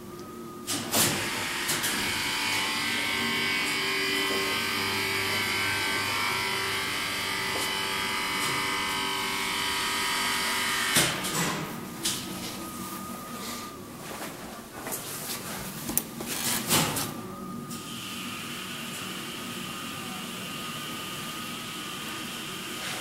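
A hydraulic elevator's pump unit runs steadily for about ten seconds as the car travels, then stops with a thump. Then a manual swing landing door is unlatched and pulled open by its handle, with several clicks and clunks.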